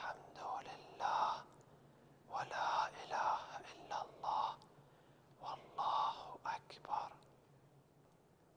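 A man whispering the Arabic tasbihat of prayer, 'Subhanallah walhamdulillah wa la ilaha illallah wallahu akbar', in three quiet runs with short pauses between them.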